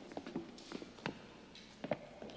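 Footsteps on a hard tiled floor: soft, irregular steps, a few a second.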